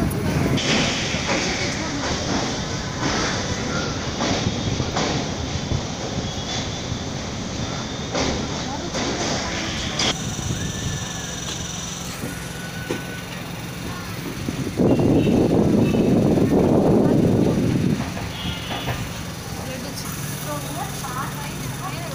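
Train running over a steel truss bridge with scattered wheel clacks, then running more quietly as it rolls into a station with voices around. A louder rumble rises for about three seconds past the middle.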